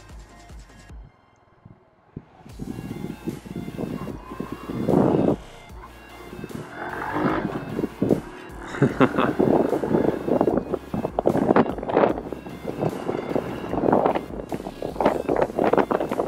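Honda Super Cub 110's single-cylinder engine pulling away from a standstill and revving up through its gears. The sound swells and drops off at each shift, under background music.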